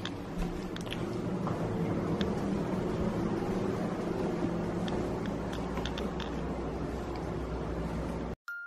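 Handling noise from a camera microphone pressed against clothing while the person carrying it walks: a steady low rubbing rumble with scattered light clicks.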